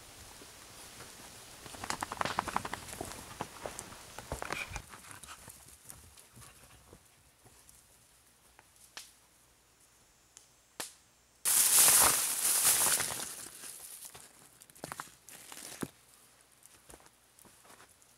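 Footsteps and scattered knocks as sandstone rocks are gathered and carried by hand. A little past the middle comes a sudden, loud, harsh burst that fades over about two seconds.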